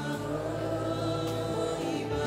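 Slow gospel worship music: backing singers holding sustained notes over steady, held keyboard chords.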